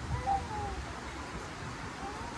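Faint gliding bird calls, one near the start and another near the end, over low outdoor background rumble.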